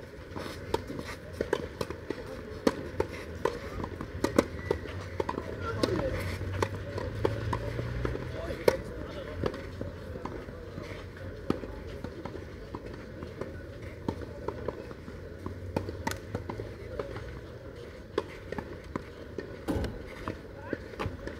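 Tennis balls struck by rackets in a doubles rally on a clay court, sharp pops about a second apart in the first few seconds. Scattered lighter clicks and indistinct voices follow.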